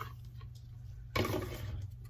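Quiet handling of thin craft ribbon on a tabletop over a steady low hum, with one short rustle about a second in as the ribbon is pulled and moved.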